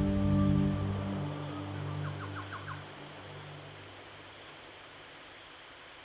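A soft, sustained new-age music track fading out over the first three seconds, leaving a quiet nature-sound bed: a faint steady hiss and a high insect trill pulsing about four to five times a second. About two seconds in, a quick run of five short chirps.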